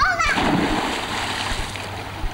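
A child's short high shout, then water splashing in a swimming pool as a child moves through it, a rushing splash lasting about a second and a half.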